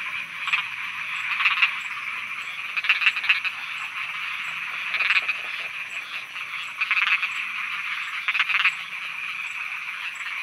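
Many frogs croaking, in bursts of rapid croaks every second or two over a steady high-pitched background chorus.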